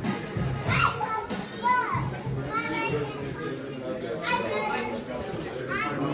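Young children squealing and calling out in high, excited voices several times over background music and chatter.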